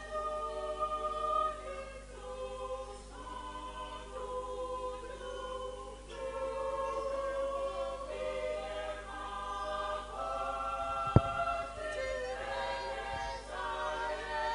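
A church congregation singing together in long held notes, with one sharp knock late on.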